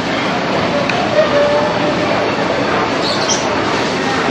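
Steady, even background noise of a busy indoor shopping mall: general crowd hubbub and air-handling hum with no single sound standing out.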